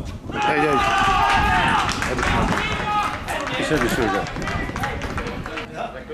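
Several voices shouting over one another, loudest in the first two seconds and again briefly a little past the middle, with scattered short thuds between.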